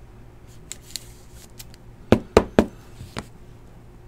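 Trading cards and a rigid clear plastic toploader handled by hand: a few faint ticks, then four sharp clicks and taps in quick succession a little past halfway.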